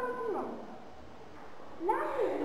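A girl's voice reading a story aloud: a phrase trails off just after the start, there is a pause of about a second, and the next phrase begins near the end.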